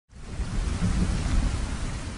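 Rain with a deep rumble of thunder, a storm sound effect that fades in quickly at the start and holds steady.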